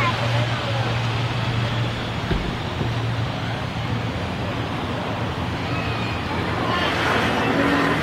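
Twin-engine turboprop airliner's engines and propellers running as the aircraft rolls away along the runway: a steady low hum under an even rushing noise.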